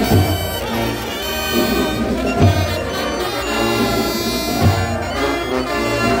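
Carnival brass band playing a gilles tune with trombones, trumpets and a sousaphone, with a deep thump about every two seconds.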